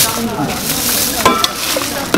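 A metal ladle stirring and scooping soup in a large aluminium pot, the liquid sloshing, with a short knock a little over a second in.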